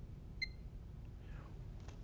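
A single short electronic beep about half a second in, from the electronic unit of an IML Resi F300 resistance microdrill, over quiet room tone, followed by a faint rustle.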